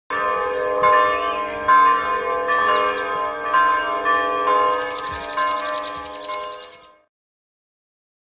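Church bells ringing, with a fresh strike roughly once a second, and birds chirping and trilling over them. It all fades out at about seven seconds.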